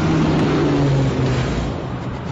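Trailer sound effects: a loud rushing noise over a low drone that steps down in pitch and eases off near the end.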